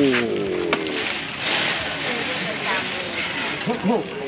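Outdoor market background: people talking nearby over music playing, with a sharp click just before a second in and a brief hiss around a second and a half in.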